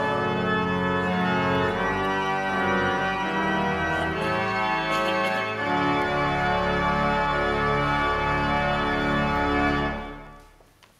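Church organ playing loud, sustained chords over deep bass notes, rounding off a hymn after the choir has finished. The chords change every second or so, then stop at the very end, with the church's echo dying away.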